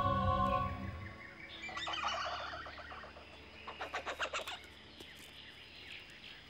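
Brooding music with held tones fades out in the first second. Birds then call: a cluster of chirps, and about four seconds in a rapid run of repeated notes.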